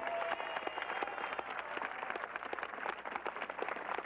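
A crowd applauding: dense, steady clapping.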